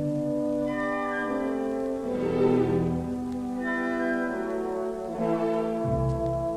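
Symphony orchestra playing, with French horns prominent in sustained, overlapping held notes and new entries coming in every second or so.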